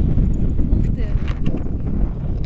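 Wind buffeting the camera microphone during a paragliding flight, a loud, steady, rumbling rush of air, with a few faint clicks or taps around the middle.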